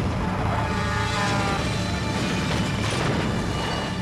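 Car tyres screeching in a skid over the low rumble of a heavy truck, a dramatized crash in a TV commercial's soundtrack.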